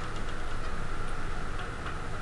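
Classroom room tone during quiet seat work: a steady hum with a few faint, scattered ticks.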